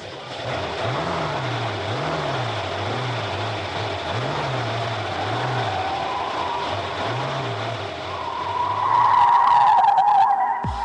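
Motor yacht running at speed: a steady rush of engine and water noise with a low pulsing about once a second, swelling louder near the end.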